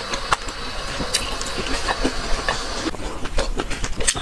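Eggshell crackling and small clicks as a boiled egg is peeled by hand close to the microphone, in a dense, irregular run of crackles.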